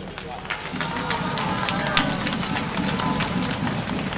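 A small outdoor crowd applauding, with many quick claps and voices chattering over them.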